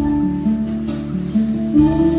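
Live jazz band playing an instrumental passage: nylon-string acoustic guitar chords over a bass line, with a couple of light percussion strikes.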